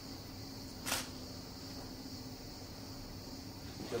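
Quiet room tone: a steady faint hum and hiss, with one short, sharp noise about a second in.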